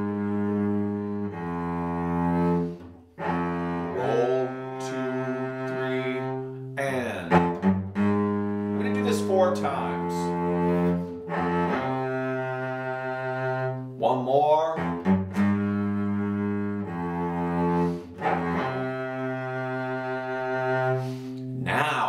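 Solo cello bowed in its low register, playing a slow melodic passage on the C and G strings. Sustained notes change every second or two, with short breaks between phrases.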